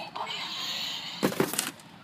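A brief clatter of several sharp knocks and rattles about a second in, over faint background noise.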